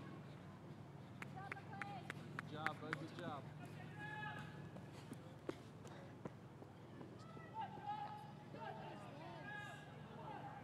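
Faint, distant shouting voices of spectators calling out to runners, in two spells, over a steady low hum, with a few light clicks.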